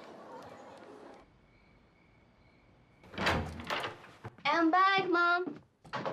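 A door shuts with a thud about three seconds in, then a girl's voice calls out loudly in three short pieces.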